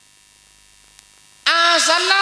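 A pause in a man's speech through a microphone, in which only a faint steady hum and hiss of the sound system is heard, with one small click about a second in. His amplified voice then comes back loudly about one and a half seconds in.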